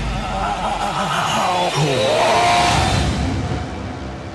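Horror trailer score and sound design: a low rumble with eerie, wavering pitched sounds bending up and down, swelling to a peak just after two seconds in, then fading.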